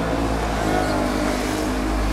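Outdoor ambience on a floodlit pitch: a steady low rumble under faint, distant shouting from players.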